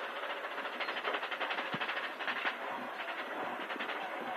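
Rally car driven at speed on a hillclimb, heard from inside the cabin: steady engine and road noise with a fast pulsing rattle about a second in.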